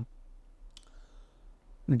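A pause between a man's sentences, holding a faint, sharp mouth click near the middle, like a lip smack; the talk resumes at the very end.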